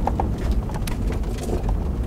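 Truck driving slowly on a snow-dusted dirt road, heard from inside the cab: low, steady engine and tyre rumble with a few sharp clicks and rattles in the first second.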